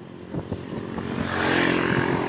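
Small motorbike engine running close by, growing louder over the two seconds, over road and wind noise.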